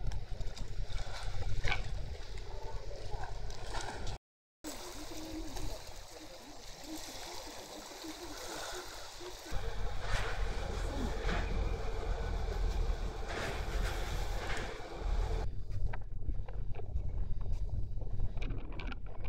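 Outdoor waterfront ambience from a few short clips joined by hard cuts: wind rumbling on the microphone, water lapping and faint voices. The sound cuts out completely for a moment about four seconds in, and the wind rumble grows heavier about halfway through.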